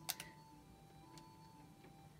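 Near silence with two faint clicks, one just after the start and a fainter one about a second in, from a utility lighter held to a white sage smudge stick.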